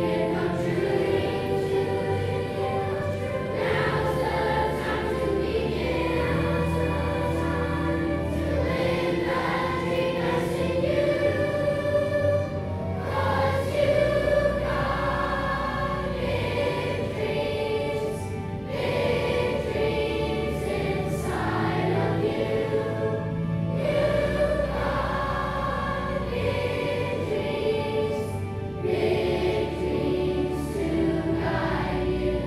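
A children's choir singing a song together, over an instrumental accompaniment of sustained low notes that change every few seconds.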